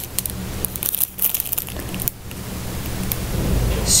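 Clear plastic packaging sleeve crinkling as it is handled, in scattered, irregular crackles.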